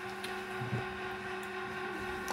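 A pause in speech with low room tone: a faint, steady hum under light background hiss.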